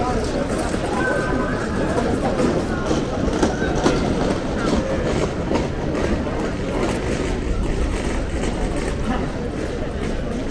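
Continuous clattering rattle of a hand truck's small hard wheels rolling over stone paving joints, with passers-by talking.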